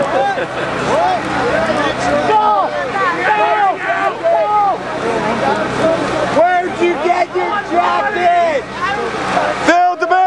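Several people talking over one another in overlapping chatter, with no single voice clear, over a steady low hum. Near the end the babble drops away and one voice stands out.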